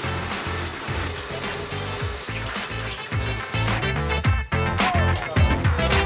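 Upbeat background music with a steady bass beat. For the first couple of seconds a hiss runs under it, like food sizzling on a hot oiled griddle.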